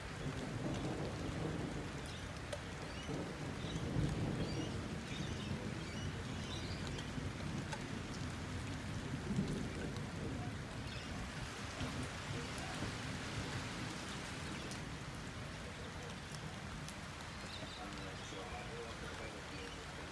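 Rain falling steadily during a thunderstorm, with a low rumble of thunder that is loudest about four seconds in.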